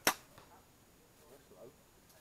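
A compound bow being shot: a single sharp snap of the string and limbs on release, dying away quickly.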